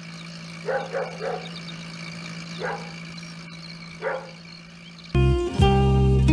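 A dog barking over a steady low hum: three quick barks about a second in, then two single barks. About five seconds in, loud plucked-string music starts.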